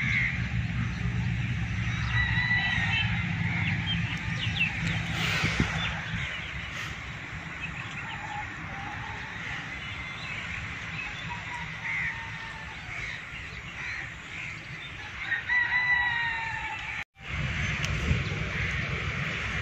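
A rooster crowing and other birds calling, over a low steady hum that is strongest in the first few seconds. The sound cuts out briefly near the end.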